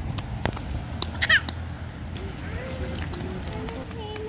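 Toddlers stepping and splashing in a shallow rain puddle on pavement, with scattered short splashes. A brief high-pitched child's squeal about a second in is the loudest sound, and soft child vocalising follows.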